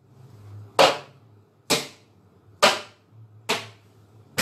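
Four sharp, evenly spaced strikes, a little under a second apart, each dying away quickly, over a faint low hum.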